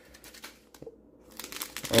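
Foil Pokémon booster-pack wrapper crinkling as it is handled, faint and scattered at first, then louder near the end.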